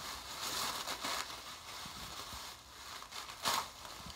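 Tissue paper and plastic wrapping crinkling and rustling as wrapped items are lifted out of a cardboard box, with one louder crackle about three and a half seconds in.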